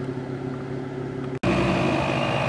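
Vehicle engine idling with a steady hum. About one and a half seconds in the sound cuts abruptly to a louder steady idle, the Jeep Wrangler's engine running while it is parked with an air hose on a tyre.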